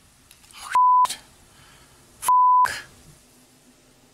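Two short electronic beeps at one steady pitch, about a second and a half apart, the second slightly longer, each cutting in and out sharply with dead silence around it, over a faint hum in the audio of a TV news clip.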